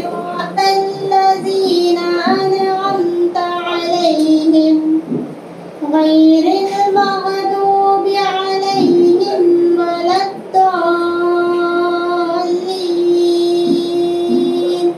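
A girl singing solo into a handheld microphone, in long held notes, with a short break about five seconds in and another about ten seconds in.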